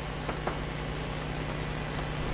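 Steady low room hum with an even hiss, with a couple of faint light taps about a third and half a second in.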